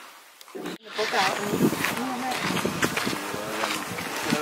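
A quiet stretch of under a second, then an abrupt cut to people's voices talking.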